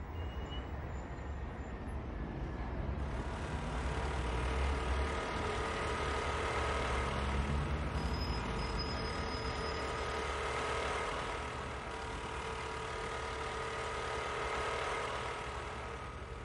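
Steady road noise of a motor scooter's engine running with street traffic, heavy in low rumble.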